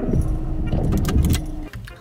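Keys jangling and clattering inside a car, over a loud low rumble and a steady low hum that stops shortly before the end.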